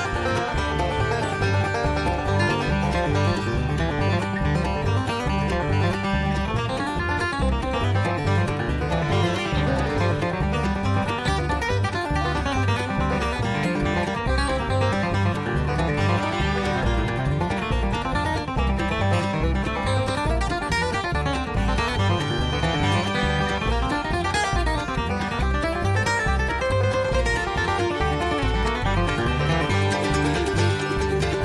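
Recorded bluegrass band music with banjo and guitar picking over a steady low beat.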